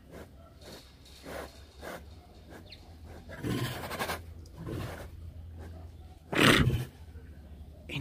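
Tiger sniffing at a toy mouse through wire fencing: a series of short breathy sniffs and exhalations, with one louder, deeper exhalation about six and a half seconds in.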